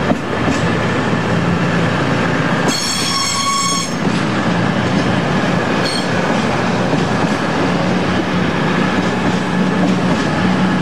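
Passenger train pulling out along the platform, a steady rumble of wheels and running gear. About three seconds in, a high ringing tone lasts just over a second, with a short high blip a couple of seconds later.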